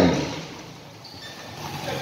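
A man's commentary voice breaks off in the first instant. Then comes a low, even background of ambient noise with no distinct event.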